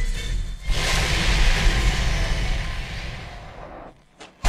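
Trailer soundtrack: music, then about half a second in a sudden swell of rushing whoosh-like noise that fades away steadily over about three seconds.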